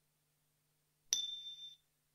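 A single bright, bell-like ding about a second in, ringing on two high tones for about half a second before cutting off abruptly, over a faint low hum.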